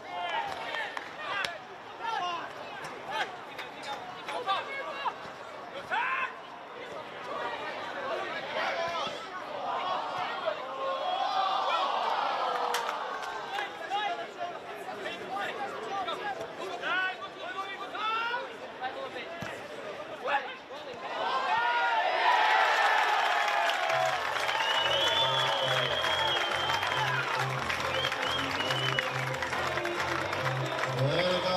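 Football match sound of players shouting and calling across the pitch over a small crowd. About two-thirds of the way through, the crowd cheers a goal, and music with a steady beat comes in soon after.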